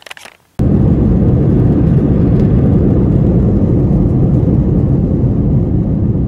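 Airliner cabin noise while rolling on the runway: a loud, steady rumble that cuts in suddenly about half a second in.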